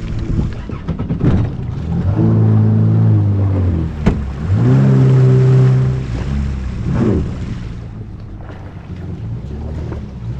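Personal watercraft engine running as the jet ski is throttled up to move slowly across the water, the engine note rising about two seconds in, dropping briefly near four seconds, coming back steady and then easing off to a lower idle, over water and wind noise.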